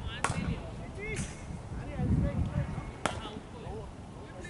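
Distant voices calling out across an open field, with two sharp knocks about three seconds apart.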